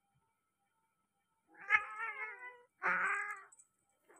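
A cat yowling twice during mating. The first is a long, wavering cry about a second and a half in, followed straight away by a shorter second yowl.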